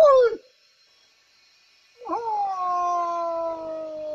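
Elderly Ao-Naga man's yodelled war cry, voiced through a hand held at the mouth: a short, loud cry falling in pitch right at the start, then after a pause of about a second and a half a long held call that sweeps up and slowly sinks in pitch for over two seconds.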